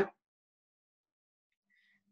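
Near silence: the call audio goes dead quiet just after a spoken word ends, with only a very faint brief sound near the end.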